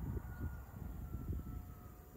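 Quiet outdoor background in a pause between words: a low rumble with a faint distant hum that falls slowly in pitch.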